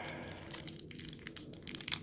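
Foil Magic: The Gathering booster pack wrapper crinkling and tearing as it is pulled open by hand, a run of small crackles.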